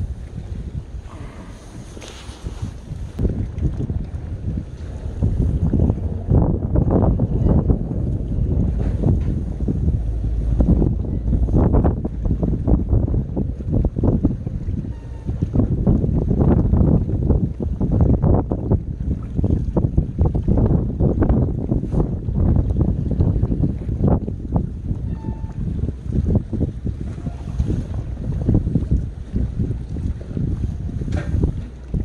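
Wind buffeting the microphone in uneven gusts, over sea water lapping below; the gusts ease briefly in the first few seconds and then pick up again.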